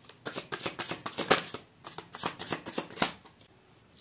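Tarot cards being shuffled by hand: a quick run of papery card clicks and rustles that stops about three seconds in.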